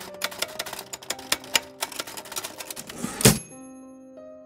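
Typewriter sound effect: quick, irregular key strikes, several a second, as a line of text is typed. About three seconds in comes a heavier strike, then a bell-like ring that fades away.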